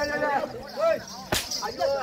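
A single sharp crack of a thick braided rope whip, about a second and a half in.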